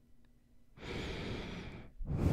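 A breath through the nose taken right up against a microphone: one airy, rushing breath about a second long, starting just under a second in.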